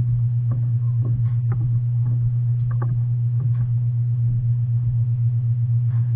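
A shovel and a long-handled digging tool striking and scraping hard-packed dirt in irregular blows, most of them in the first four seconds, while the soil is broken up. A loud, steady low hum runs underneath throughout.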